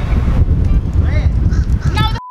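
Low rumble of wind buffeting the microphone, with a few short honking calls, as of geese, about a second in and again near the end.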